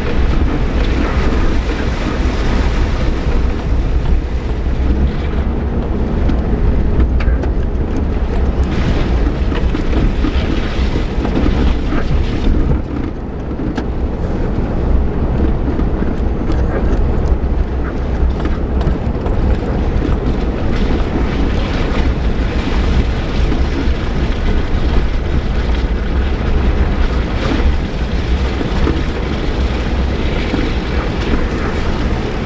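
Suzuki Jimny heard from inside the cab, driving slowly along a rutted dirt track. Its engine and tyres make a steady low drone, with scattered knocks and rattles as it bumps over the ruts.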